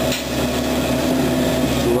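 Hydraulic excavator's diesel engine running with a steady drone while it digs the foundation trench.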